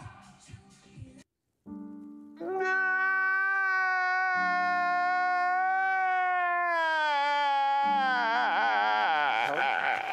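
Comedy meme audio: a single long, high wailing note held for about five seconds over low sustained backing chords. The note then slides downward in wobbling waves near the end as more music comes in.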